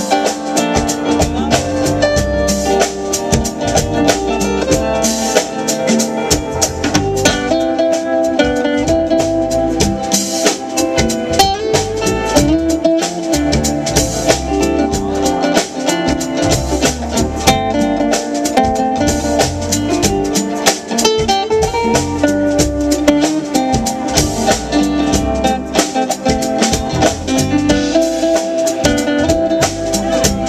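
Live smooth-jazz band: an amplified acoustic guitar plays the melody over a drum kit and the rest of the band, at a steady groove.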